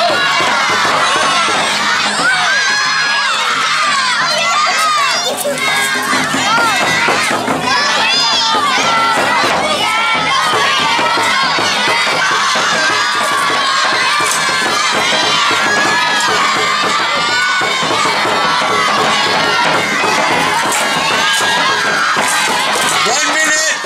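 A crowd of children shouting and cheering, with many high voices overlapping continuously at a steady loud level.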